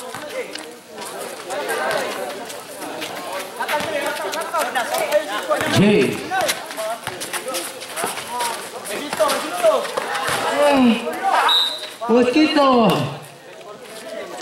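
Overlapping voices of spectators and players calling out and chattering during a basketball game, with a few sharp knocks. A brief high whistle sounds near the end, just before a foul is called.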